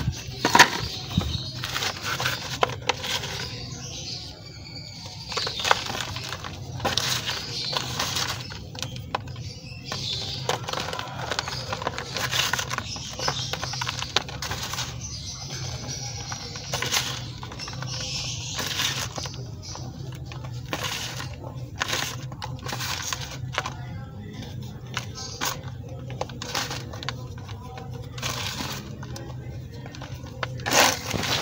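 Dried gym chalk slabs being crumbled by hand in a plastic tub: irregular crisp crunches and cracks as the pieces break down into powder.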